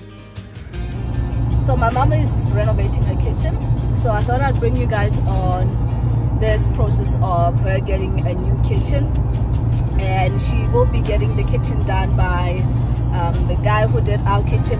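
A song with singing plays over a steady low road rumble from a moving car, heard from inside the cabin. The rumble comes in about a second in.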